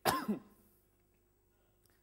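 A man clearing his throat once, a short sharp sound that drops in pitch.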